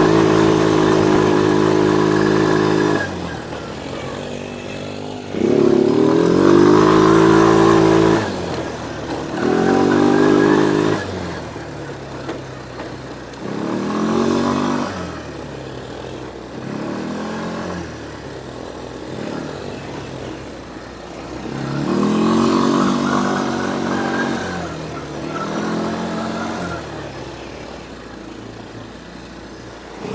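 ATV (quad bike) engine: steady for the first few seconds, then rising in pitch as the throttle opens and dropping back again, about six times over the ride, loudest in the first half.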